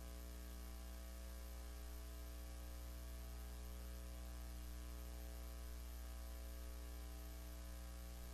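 Faint, steady electrical mains hum: a low hum with a ladder of buzzy higher tones above it and a light hiss, unchanging throughout.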